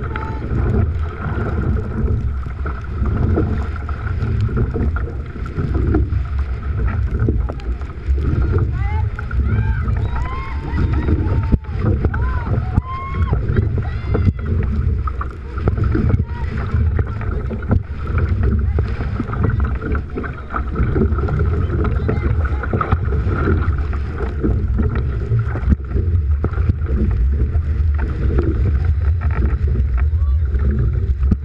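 Wind buffeting the microphone on a rowing boat under way, over the rush and splash of water as the crew rows. Several short rising-and-falling cries come about nine to fourteen seconds in.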